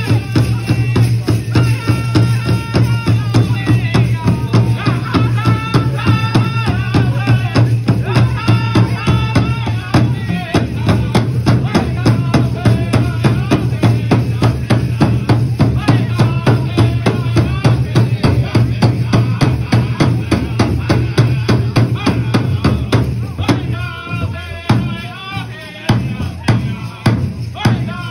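A pow wow drum group singing a side-step song: several voices in bending sung lines over steady, regular beats on a big drum. Near the end the drumming thins out and the singing carries on.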